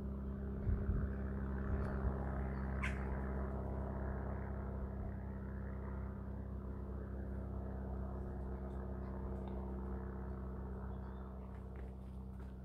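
Steady low machine hum made of several even tones, with one faint click about three seconds in.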